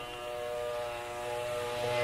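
Tanpura drone: several steady tones held together without a break, growing louder near the end.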